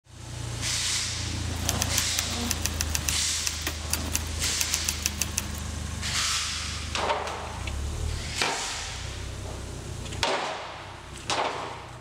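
The 2014 Ford Fiesta ST's 1.6-litre turbocharged four-cylinder runs steadily at idle with a low hum, over swells of rushing noise and a run of sharp clicks. The hum cuts off about ten seconds in.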